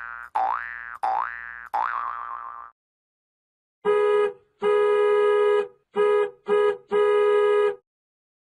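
Cartoon boing sound effects: four springy boings one after another, each sweeping up in pitch and fading. After a pause of about a second, a buzzy horn-like tone at one steady pitch sounds five times in a short, long, short, short, long pattern.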